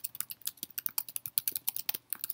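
Typing on a computer keyboard: a fast, even run of keystrokes, about nine a second, as a line of text is entered.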